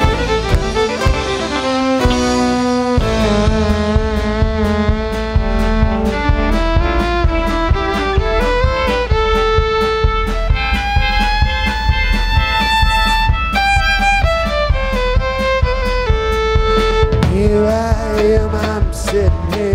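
Live bluegrass-rock band playing an instrumental break: fiddle taking the lead over acoustic and electric guitar, upright bass and drum kit, with a steady beat. Recorded from the soundboard feed.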